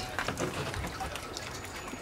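Thin trickle of rainwater running out of a flexible plastic downspout extension into a rain barrel, with small irregular drips; only a little water is coming off the roof now.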